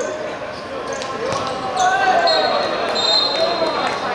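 Players' shouts on a five-a-side football pitch, then a referee's whistle blown in one long, steady blast from just past two seconds in, signalling the goal.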